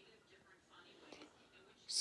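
Quiet room with faint murmuring and a small click about a second in; a man's voice starts up loudly right at the end.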